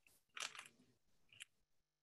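Near silence with a short faint rustle about half a second in and a faint click near the end.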